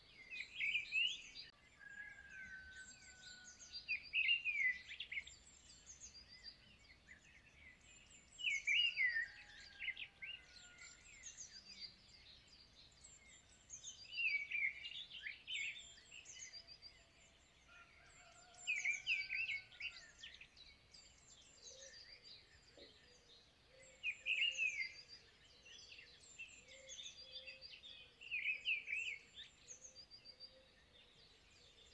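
A songbird singing a short phrase over and over, about every four to five seconds, with fainter high chirps from other birds in between.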